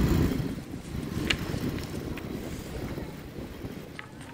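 Wind buffeting a phone microphone over a low traffic rumble. It is loudest at the start, then settles into a steady noise, with one sharp click about a second in.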